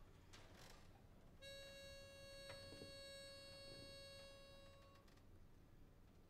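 A barbershop pitch pipe sounding one steady reed note for about three and a half seconds, giving the chorus its starting pitch before it sings. A few faint clicks of audience noise come before it.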